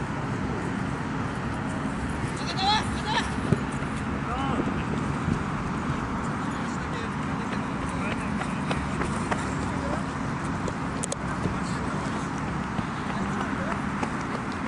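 Outdoor soccer-match ambience: distant players shouting and calling to each other over a steady background rumble, with a sharp knock about three and a half seconds in and another near eleven seconds.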